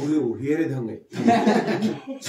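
People talking and chuckling together, with a brief pause about a second in.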